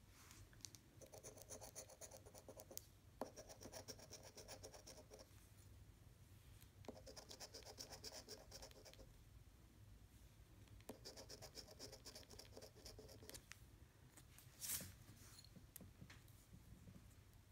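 A coin scratching the latex coating off a lottery scratch-off ticket, quietly, in four bouts of rapid back-and-forth strokes of about two seconds each. Near the end comes one short, louder rasp.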